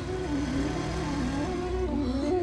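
Motorcycle engine running as the bike is ridden along, under background music with a wavering melody line.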